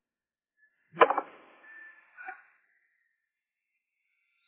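A sharp whoosh sound effect about a second in, trailing off quickly, followed by a short faint blip about a second later.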